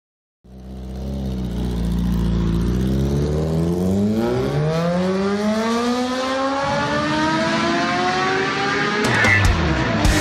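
A motorcycle engine running, then revving up in one long, smooth rise in pitch. Near the end, a few sharp hits come in as the rock song starts.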